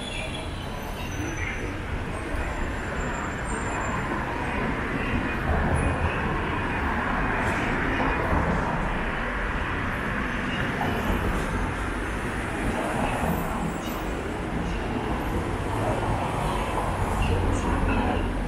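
City street traffic: a steady rumble and hiss of passing cars and scooters, swelling as vehicles go by.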